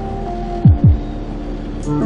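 Background electronic music: held synth chords, with two deep bass booms falling in pitch a little over half a second in. Near the end a new section starts with a ticking beat and plucked chords.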